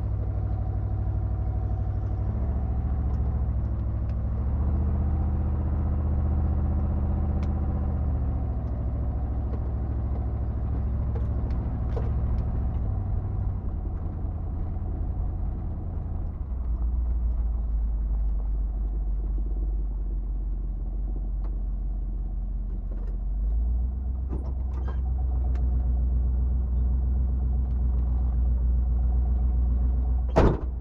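1977 Jeep Cherokee's engine running as the vehicle drives along a dirt track. Its low hum steps to a new pitch several times as the revs change, with a few short clicks and knocks scattered through.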